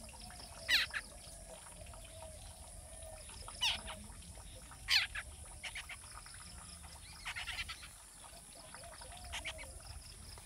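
Spiny babbler calls: a few sharp, steeply falling notes, the loudest about five seconds in, and short runs of quick notes, over a steady high hiss.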